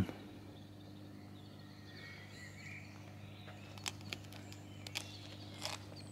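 Quiet outdoor ambience: a steady low hum, with faint chirps about two seconds in and a few soft clicks in the last two seconds.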